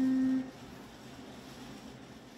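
The last note of a Yamaha piano piece, a single tone near middle C, rings on and is cut off about half a second in as the key is released. Faint room tone follows.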